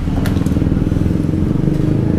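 A motor vehicle engine, most like a motorcycle's, running with a steady low rumble. A single short click comes about a quarter second in.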